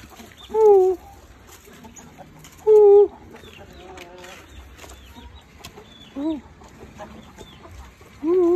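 Chickens calling: three loud, short calls, two close together in the first three seconds and a shorter one about six seconds in, with faint high chirps between them.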